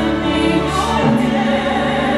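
Live symphony orchestra playing sustained chords under singing; from about a second in, a sung line with a wide vibrato rises above the orchestra.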